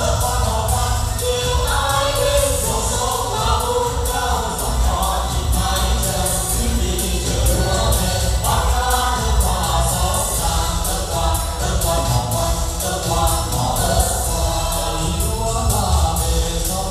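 Amplified Vietnamese song performed live: several singers on microphones singing together over accompaniment with a steady beat and heavy bass.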